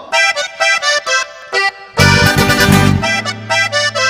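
Norteño corrido intro led by accordion: short, separate accordion notes alone at first, then the full band comes in about halfway with a strong bass line underneath.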